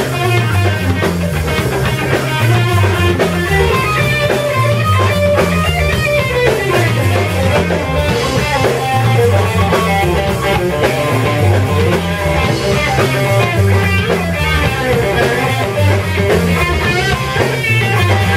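Live rock band playing an instrumental passage: electric guitar lines over a drum kit, with a repeating low note pattern underneath.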